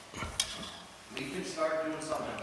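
Quiet room tone in a meeting hall with a single sharp click about half a second in, then faint voices talking in the background during the second half.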